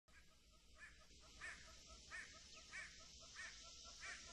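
Faint bird calls, a short call repeated about every two-thirds of a second, over near silence.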